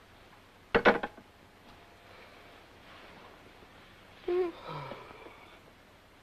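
A telephone receiver set down on its cradle with a short clatter and brief ring about a second in; a few seconds later a short sleepy murmur or groan falling in pitch, in a quiet room.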